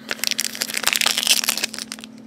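Foil Pokémon booster pack wrapper crinkling and crackling as it is handled, a dense run of rustling crackles that peaks around the middle.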